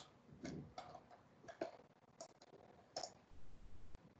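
Faint computer mouse clicks, about half a dozen at irregular intervals, as a Google Earth view is moved and zoomed.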